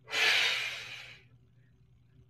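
A woman's forceful exhale through the mouth, one breathy rush of about a second that fades away, pushed out with the effort of curling up in a reverse crunch.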